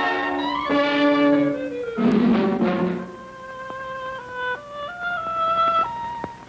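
Orchestral cartoon score: full chords for the first few seconds, then from about three seconds in a slow melody of held notes climbing step by step.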